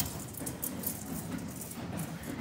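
Irregular footsteps and clattering shuffle of a group of people getting up from their seats and walking in a line on a hard floor.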